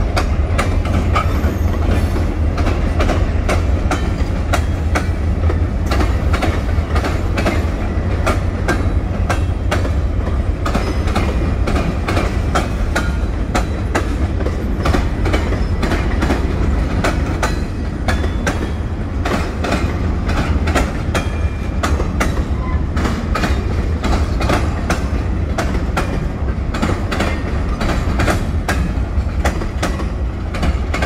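Norfolk Southern freight train's covered hoppers and boxcars rolling past: a steady heavy rumble with rapid, irregular clicking of wheels over rail joints.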